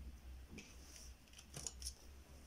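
Faint handling noises with a low steady hum underneath. There are a few soft rustles and clicks, then a quick cluster of sharper clicks about a second and a half in.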